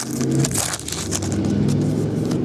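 Foil trading-card pack being torn open and its wrapper crinkled, a quick run of crackles, over a steady low mechanical hum.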